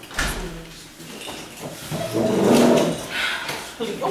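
Indistinct voices and movement as people in the room get to their feet, with a sharp knock just after the start and a loud rough sound around the middle.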